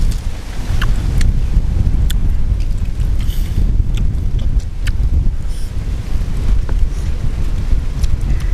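Wind buffeting the microphone, a heavy uneven rumble throughout, with a few small clicks from eating.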